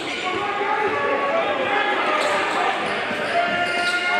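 Live game sound in a gym: a basketball being dribbled on the hardwood, short sneaker squeaks, and voices of players and spectators, all echoing in the hall.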